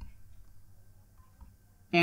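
Quiet room tone with a faint low hum, then a man's voice starting right at the end.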